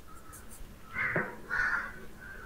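Two short, harsh bird calls about half a second apart, in the manner of a crow cawing.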